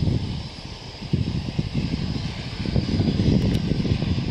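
Wind buffeting the microphone outdoors: an irregular low rumble that gusts up about a second in.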